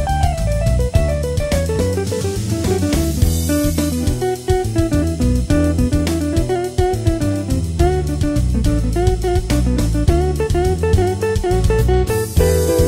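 Electric guitar playing a single-note lead solo with string bends, over a band backing of drums and bass guitar, with a cymbal crash about three seconds in.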